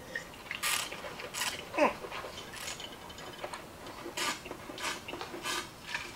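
A wine taster slurping a mouthful of white wine, drawing air through it in several short hissing slurps, with a brief 'mm' about two seconds in.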